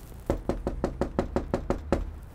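Knocking on a front door by hand: about ten quick, evenly spaced knocks in one steady run, starting a moment in.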